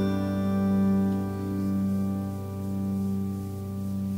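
Concert zither with a chord of several notes ringing on and slowly dying away, no new notes plucked.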